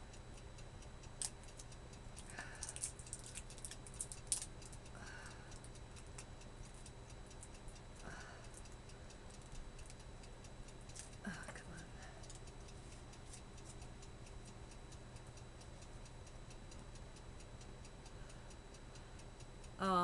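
Faint, steady ticking of a clock in a quiet room, with a cluster of small sharp clicks in the first few seconds from makeup pencils being handled.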